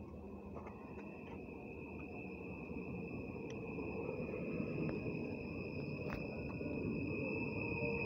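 Stadler FLIRT electric train arriving and running past close by: a rumble of wheels on rail that grows steadily louder as it nears. A steady high whine carries over it.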